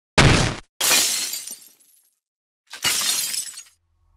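Glass smashing, three separate crashes about a second apart, the second with a longer trailing tail.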